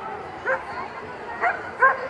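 A dog barking: three short, sharp yaps, the last two close together near the end, over background crowd chatter.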